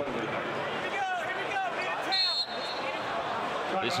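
Arena crowd chatter and voices on the court during an injury stoppage, with one short, high referee's whistle blast a little over two seconds in.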